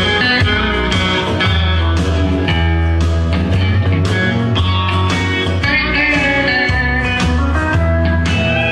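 Instrumental intro of a recorded country-swing band song, with a steady bass line under several guitars, and an electric Fender Telecaster picked along with it.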